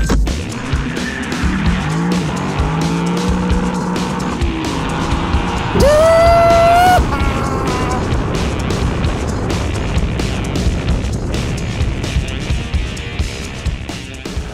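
Lexus LC 500's 5.0-litre naturally aspirated V8 revving as the car pulls away and accelerates, its pitch rising. A loud, high squeal lasting about a second comes midway and is the loudest sound.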